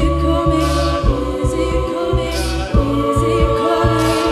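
A cappella group singing held chords over a low sung bass line, with a vocal percussionist beatboxing a steady kick, snare and hi-hat beat.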